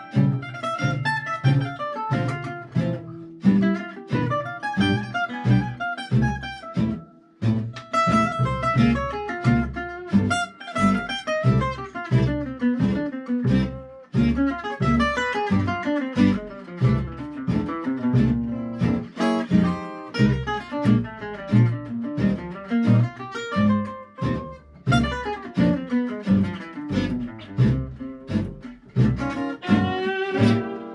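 Gypsy-jazz (jazz manouche) band of acoustic guitars and double bass: a lead guitar plays fast single-note runs over rhythm guitar and plucked double bass, with the violin silent.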